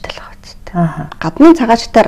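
Speech only: a person talking in the interview, softly for the first moment and then in a normal voice.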